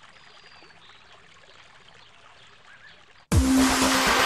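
Faint trickling-water ambience with a few thin high tones. A little over three seconds in, loud electronic music with a deep beat cuts in suddenly.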